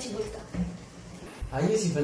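Speech only: a woman's voice at the start, a short pause, then a man starts talking near the end.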